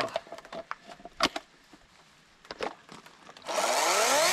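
A few sharp handling clicks as the tether cord is connected to a Toro battery chainsaw, then near the end the chainsaw's electric motor starts and the chain spins up, rising in pitch and loud.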